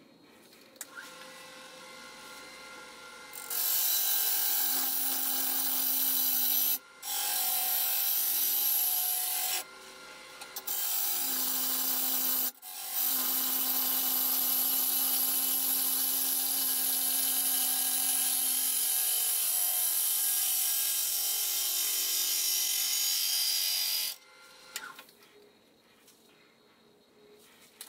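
Turning gouge cutting a spinning oak crotch hollow form on a wood lathe: a loud, steady hiss of shavings coming off, broken three times by short pauses as the tool is lifted, and stopping about two seconds before the end. A lower steady lathe hum runs beneath it.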